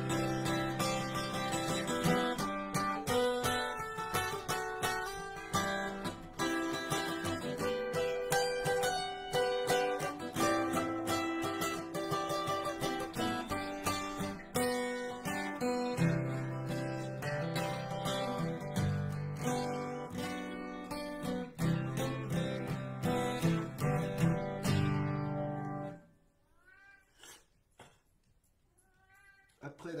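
Acoustic guitar strummed in steady chords, stopping abruptly about four seconds before the end. A cat then meows, in short rising-and-falling calls.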